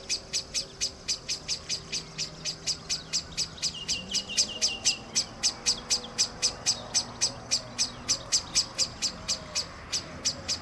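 Male common blackbird giving a rapid, steady series of sharp call notes, about five a second without a break. It is the blackbird's alarm call, which the uploader suspects is raised at her presence.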